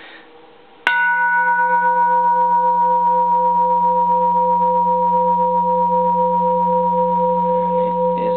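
Large bronze Japanese Buddhist temple bell struck once with a plastic hammer about a second in, then ringing on with a long sustain: a low hum under several higher tones, one of them pulsing a few times a second, the highest fading within a few seconds.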